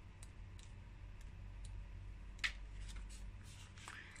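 Pages of a small paperback card guidebook being leafed through by hand: faint paper rustles and light clicks, with one sharper tick about two and a half seconds in, over a faint low hum.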